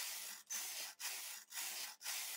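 Knitting machine carriage pushed back and forth across a narrow needle bed, knitting straight rows. Each pass gives a sliding hiss lasting about half a second, with a brief break at every reversal, about four passes in all.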